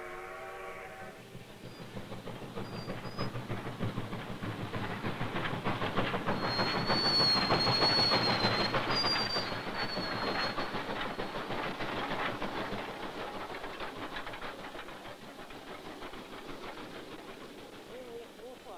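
Steam locomotive hauling a freight train past, its wheels clattering over the rail joints. The clatter swells to its loudest midway, with high wheel squeals, then fades away. A short steady tone sounds at the very start.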